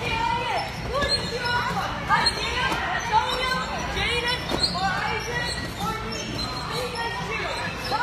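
Indistinct voices and shouts echoing through a large indoor hall, overlapping throughout, with occasional dull thumps of bodies landing on trampoline beds.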